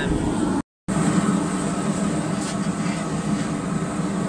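Steady, loud low drone of a blacksmith's forge running in the workshop while the steel heats, broken by a short dropout in the sound under a second in.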